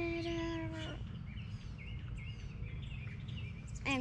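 A child's drawn-out 'umm' trails off in the first second. After it, small birds chirp faintly over a steady low outdoor rumble.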